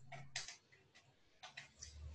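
Faint, light ticks and taps of a paintbrush working paint in a small plastic bottle cap: a few early on and a short cluster a little after halfway.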